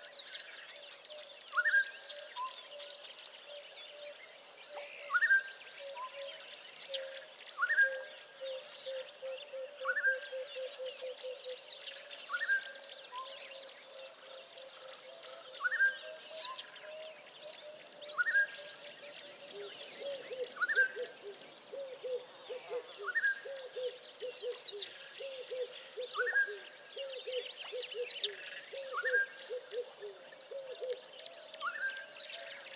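Wild birds calling in a busy chorus: a short upward-sweeping note repeats every two and a half to three seconds and is the loudest sound, over a lower fast trill and a dense layer of high chirps, with a rising run of high notes near the middle.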